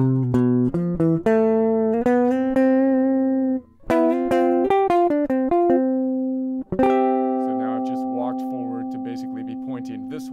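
Electric guitar picking a run of single notes and double stops from the C major scale, walking up the neck, about fifteen notes with a short break near the middle. The last note, struck about seven seconds in, rings on to the end.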